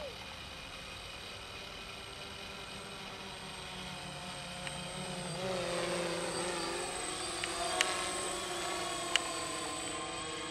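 Small quadcopter drone's propellers buzzing overhead, a layered whine that grows louder through the middle as the drone comes closer, its pitch wavering and sliding as it manoeuvres. Two sharp clicks come near the end.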